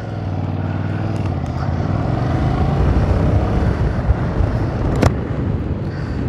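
Yamaha Tracer 7's 689 cc 270-degree parallel-twin engine running as the bike rides off and gathers speed, with wind noise on the onboard microphone building as it goes. A brief sharp click about five seconds in.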